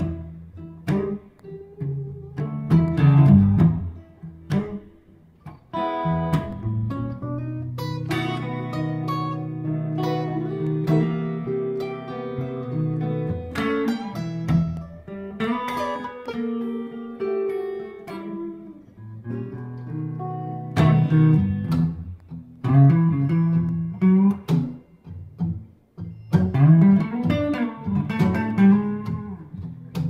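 A Tacoma acoustic guitar and a Stratocaster-style electric guitar play an instrumental blues break together, with a few long notes bent and held in the middle.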